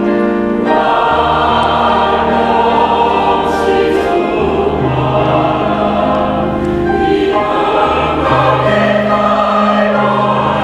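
Mixed choir of women's and men's voices singing a slow song in Taiwanese, holding long sustained chords that change every second or two.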